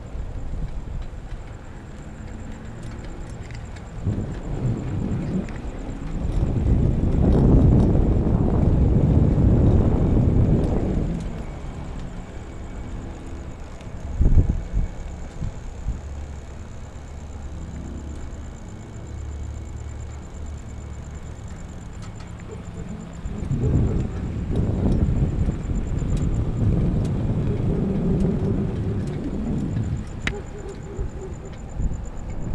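Wind buffeting the microphone and tyre noise from a moving e-bike. The rumble swells twice, with a sharp knock about 14 seconds in.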